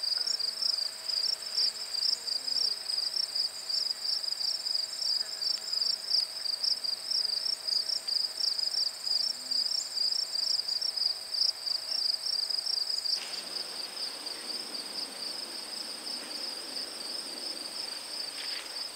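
Crickets chirping in a steady, fast-pulsing high chorus. About thirteen seconds in it drops in loudness and becomes smoother.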